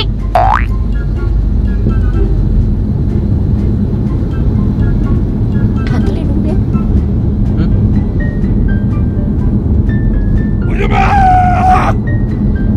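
Edited-in background music with short repeated notes over a steady low rumble. A rising cartoon 'boing' sound effect comes about half a second in, and a brief high-pitched voice-like sound comes near the end.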